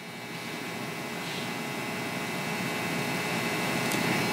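Steady room-tone hiss, an even background noise with a faint hum, growing gradually louder.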